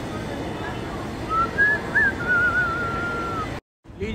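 A person whistling a short, wavering tune over steady background noise, cut off suddenly near the end.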